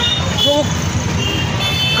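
A man's voice says a single word, then pauses; through the pause runs outdoor background noise with a few faint steady high-pitched tones over the last second.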